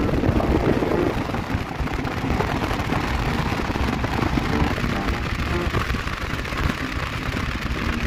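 Wind buffeting the camera microphone on a KTM Duke 390 cruising at about 80 km/h, with the bike's single-cylinder engine running underneath.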